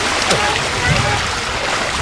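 Small waves washing in over the shallows with wind rumbling on the microphone, a steady rushing noise, with faint distant voices.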